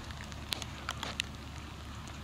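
Steady low hum from the VOR/DME radio beacon station's equipment, the sign that the beacon is operating. Scattered sharp ticks sound over it.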